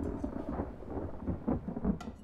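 Low, uneven rumble of thunder in the soundtrack, with faint crackles above it.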